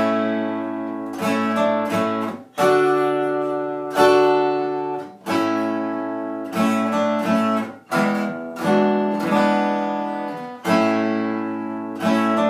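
Acoustic guitar played with a flatpick: chords are struck about every second and a half and left to ring, with lighter picked notes between them.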